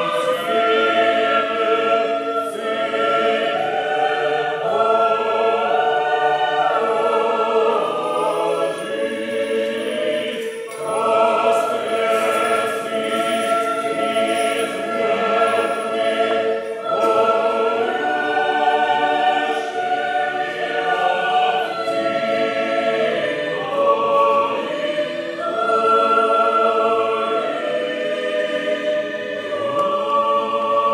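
Orthodox church choir singing a liturgical hymn unaccompanied, several voices in sustained chords that shift from phrase to phrase.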